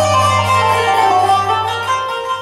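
Live Arabic music with a qanun plucking quick runs of notes over a low held note that fades near the end.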